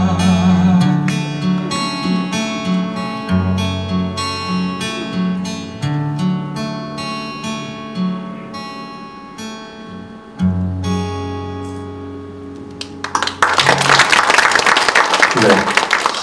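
Instrumental outro of a ballad played on acoustic guitar, plucked notes over low held bass notes, fading quieter toward the end of the song. About three-quarters of the way through, loud audience applause breaks out.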